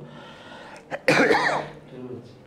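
A man coughs once, a single short, harsh cough about a second in.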